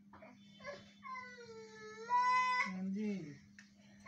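A baby's long, high-pitched squealing cry starting about a second in, held for over a second, then breaking into a lower voice that falls in pitch.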